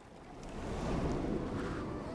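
A steady rush of wind and surf noise, swelling up over the first second.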